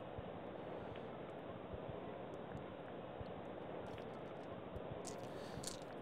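Strat-O-Matic player cards being handled and laid on the cardboard game board: faint rustling and a few light taps over a steady low hiss.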